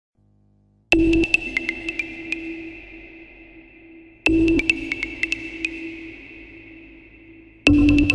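Opening of an electronic acid techno track. After a short silence, a high ringing synth ping is struck three times, about every three and a half seconds. Each strike fades slowly under a scatter of echoing clicks.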